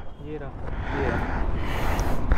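Low outdoor background noise with faint, indistinct voices.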